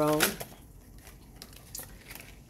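Faint, sparse clicks and light rustling of tarot cards being handled and pulled from the deck, just after a voice trails off.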